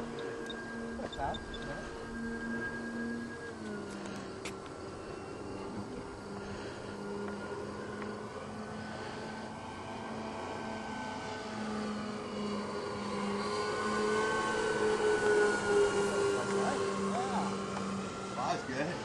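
Electric twin-motor RC P-38 Lightning model in flight, its motors and propellers giving a steady whine. The whine drops in pitch about three and a half seconds in, rises again around twelve seconds, and grows louder near the end as the plane comes closer.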